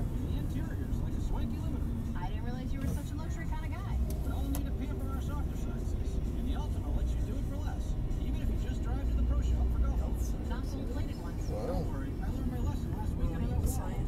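Road and engine rumble heard from inside a moving car, steady and low, swelling a little twice, with faint voices in the cabin underneath.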